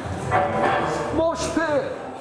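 People's voices calling out and whooping in a large room, with one drawn-out call in the middle followed by short rising and falling shouts.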